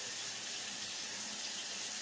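Steady, even background hiss with no distinct events, a faint airy noise like a running tap or fan.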